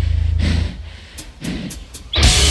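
A low bass drone from the stage cuts off under a second in. Then come four quick, evenly spaced drumstick clicks, about four a second: a drummer's count-in just before a heavy band comes in.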